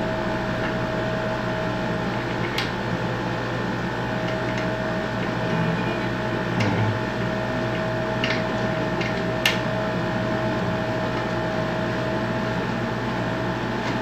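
Steady machine hum carrying one constant tone, with a few faint light clicks as the nut on the microphone arm's metal clamp is tightened, about two and a half seconds in and again around eight and nine and a half seconds.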